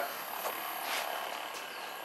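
Faint, steady whir of a Hypervolt percussion massage gun running against the thigh muscle.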